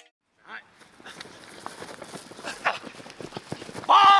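Faint irregular footsteps and knocks on a grass field with distant voices, then a loud shout near the end.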